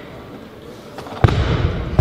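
A barbell loaded with rubber bumper plates dropped from overhead onto a lifting platform: a loud, heavy thud a little over a second in, followed by the bar and plates rumbling and rattling as they bounce, with another knock at the end.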